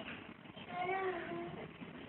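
A single drawn-out animal call about a second long, starting just under a second in, rising slightly in pitch and then dropping near its end, over a faint steady hiss.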